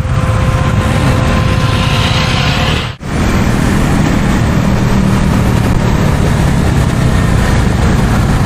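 KTM Duke 390 single-cylinder engine running as the motorcycle rides along at moderate road speed, with wind rushing over the action camera's microphone. The sound drops out briefly about three seconds in.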